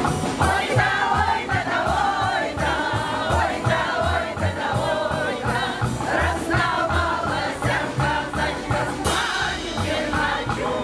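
Choir singing a song with instrumental accompaniment, over a steady bass beat about twice a second.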